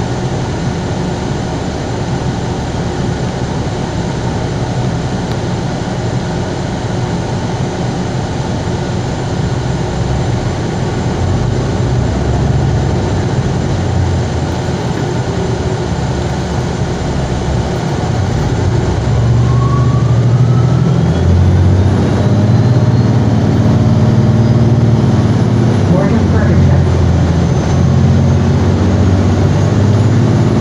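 Cabin noise inside a Gillig BRT hybrid-electric transit bus under way: steady drivetrain and road noise. It grows louder past the midpoint as the bus picks up speed, with a faint whine rising in pitch.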